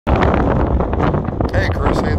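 Wind buffeting the microphone: a heavy, steady low rumble outdoors.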